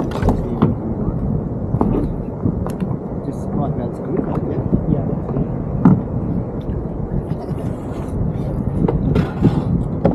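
Choppy water slapping and sloshing against the kayak hulls under a steady rumble of wind, with a few sharp clicks and knocks as a drooping mount on the kayak is worked on and tightened.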